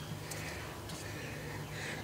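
Quiet background with a steady low hum, and faint light rustling as plastic fittings are handled.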